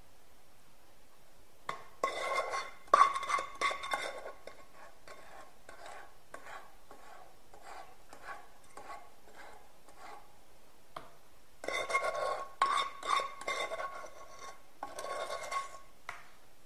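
A wooden spoon scrapes and knocks inside metal pans, scraping out and spreading melted chocolate, and the metal rings faintly with the strokes. The strokes come in two busy spells, about two seconds in and again from about twelve seconds in, with lighter single scrapes between.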